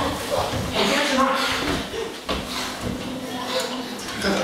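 Voices making sounds without clear words, with a few short thumps from two actors grappling on a stage floor.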